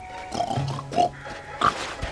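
Cartoon wild boar giving a few short grunts as it noses around a tree trunk, over soft background music.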